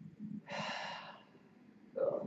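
A man's single audible breath, a long exhale like a sigh, starting about half a second in and lasting under a second.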